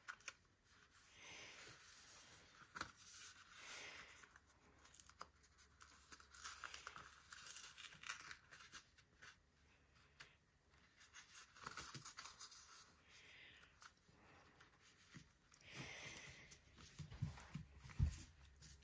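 Faint rustling and peeling of a fabric ribbon being worked loose from its glue-dot adhesive and pressed back along a cardstock card, with a few light clicks.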